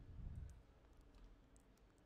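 Near silence: room tone with about three faint clicks of computer input as text is copied and pasted in a code editor.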